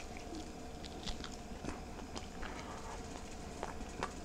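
A person biting and chewing a mouthful of smoked brisket: faint, scattered small wet clicks of chewing, over a faint steady hum.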